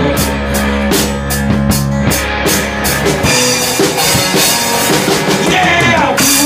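Live rock band playing in a room: a drum kit with cymbal and bass drum strokes keeping a steady beat under strummed acoustic guitar and electric guitar, with no singing in this passage.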